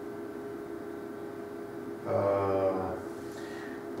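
A steady electrical hum from the recording, with a man's voice holding one drawn-out hesitation sound for under a second about two seconds in.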